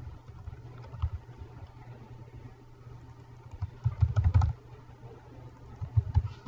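Computer keyboard being typed on in short runs, each keystroke a dull click, with a quick flurry of keystrokes about four seconds in.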